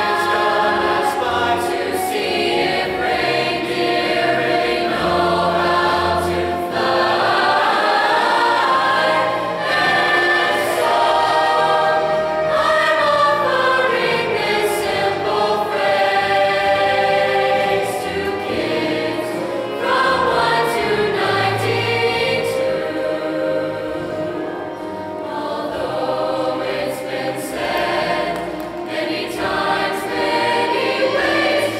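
Mixed high-school choir of girls' and boys' voices singing in parts, with long held notes and melodic lines gliding up and down.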